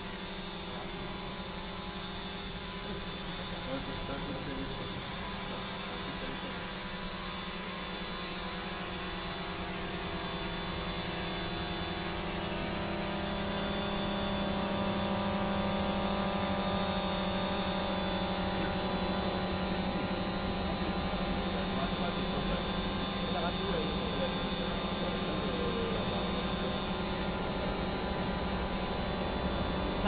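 DJI Mavic Pro quadcopter's electric motors and propellers running with a steady whine, growing louder over the first half and then holding level.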